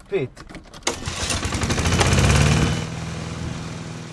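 Car engine starting: it turns over and catches about a second in, runs up loudest around the two-second mark, then settles to a steadier idle.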